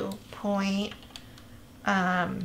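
A few light computer keyboard keystrokes, typed while entering a number into a field, with a short wordless vocal sound about half a second in and voice coming back at the very end.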